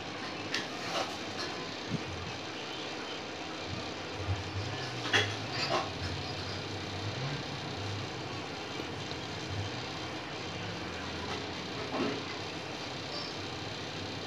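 Steady hum and hiss of a desktop PC running as it boots, with a few faint clicks and a low wavering sound in the middle.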